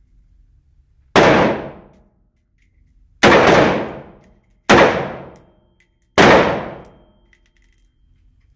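HK G36 5.56 mm rifle fired four single shots on semi-automatic, spaced about one and a half to two seconds apart. Each sharp report is followed by about a second of echo from the indoor range.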